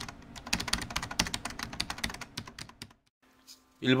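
Computer keyboard typing: a rapid run of clicks, several a second, that stops about three seconds in.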